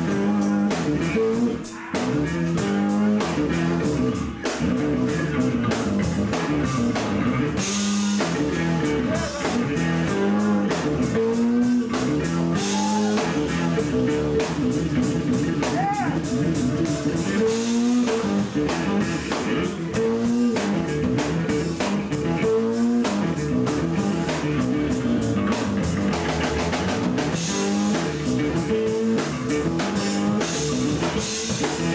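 Live band music: a four-string electric bass playing moving lines over a drum kit keeping a steady beat.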